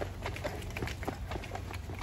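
A person's brisk footsteps while walking, a few light taps a second, over a low steady rumble on the handheld phone's microphone.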